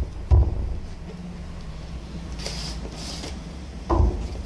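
Cardboard product box being handled and opened: a dull knock a fraction of a second in, a papery scrape as the inner box slides out of its sleeve around the middle, and another knock near the end, over a steady low hum.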